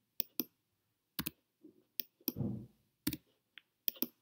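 Computer keyboard keys and mouse buttons clicking: about eight sharp, irregularly spaced clicks. A short low sound follows a little after two seconds in.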